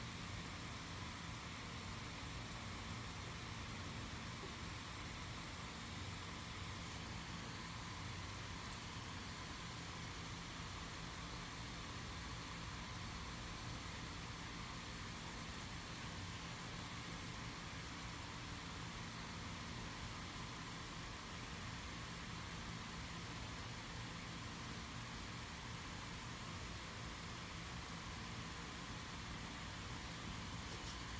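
Steady, even hiss with a faint low hum underneath and no distinct events: room tone and recording noise.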